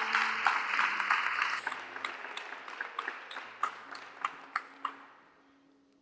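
Congregation applauding: dense clapping that thins out to scattered single claps and dies away about five seconds in.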